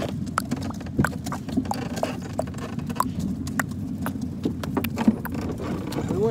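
Red Radio Flyer wagon rolling over pavement: a steady low rumble from the wheels with irregular clacks and knocks as they bump over the ground.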